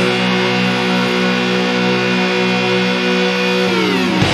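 Instrumental doom metal: a fuzz-distorted electric guitar in drop-C tuning holds one heavy sustained chord, which slides down in pitch near the end.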